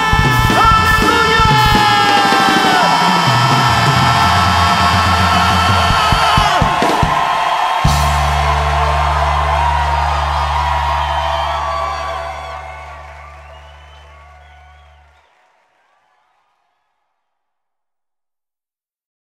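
The ending of a Korean worship (CCM) song: singers and band with drums play on for several seconds, then strike a final chord whose low notes are held while the whole sound fades out to silence.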